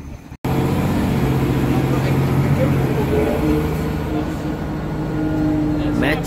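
City transit bus heard from inside the cabin: a steady low engine drone and road noise as the bus moves, starting abruptly after a cut about half a second in.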